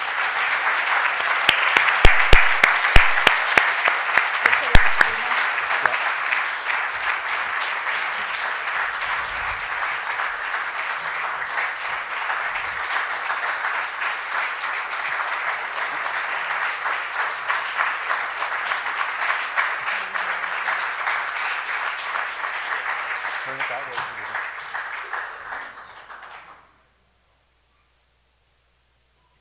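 An audience applauding, loudest in the first few seconds with some sharp close-by claps, then steady, before it cuts off abruptly near the end.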